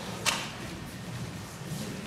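A thrown pair of dice hitting the stage floor with one sharp click about a quarter second in, over faint hall ambience.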